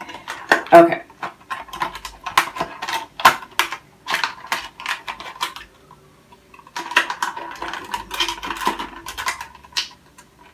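Stiff clear plastic packaging being handled and pulled open: rapid crinkling and clicking, in two spells with a short lull in the middle.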